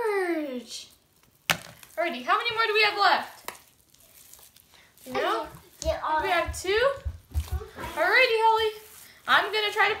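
Voices talking in short phrases that the recogniser did not catch, a young child's among them. Under them is a soft wet squishing of hands kneading and digging through slime.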